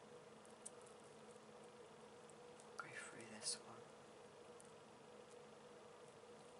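Near silence with a steady faint hum; about three seconds in, a woman's brief whisper lasting under a second.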